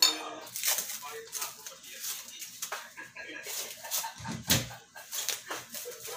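A roll of plastic cling wrap being handled and pulled out: irregular crinkling rustles and small knocks, with a dull thump about four seconds in.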